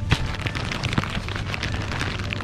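Thumps and plastic crinkling as plastic-wrapped packs of bread rolls are handled and lifted from a supermarket display, with two sharper knocks, one just after the start and one about a second in, over a steady low hum.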